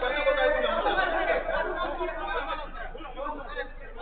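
Several men's voices talking and calling to one another, loudest in the first two seconds and then dropping away.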